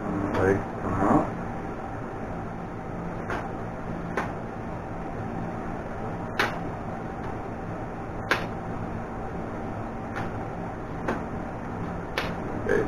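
Sharp clicks and snaps of a plastic-and-aluminium camera tripod's leg locks and joints as its legs are spread and extended, about six clicks spread a second or two apart. Under them runs the steady hum of a box fan.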